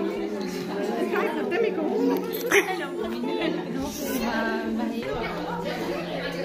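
Several women chatting at once, overlapping voices, with a steady low hum underneath and a single sharp click about two and a half seconds in.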